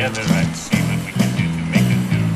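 A man singing into a microphone over amplified music with a steady beat of about two pulses a second.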